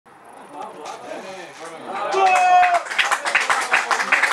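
Men's voices calling out, faint at first and then loud, with one drawn-out shout about two seconds in.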